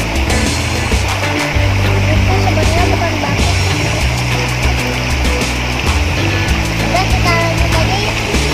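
Loud background music with held bass notes and a fast, driving drum beat.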